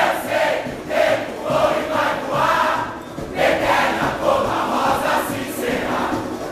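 A large samba-school chorus of many voices sings together in loud phrases, with a short drop about three seconds in.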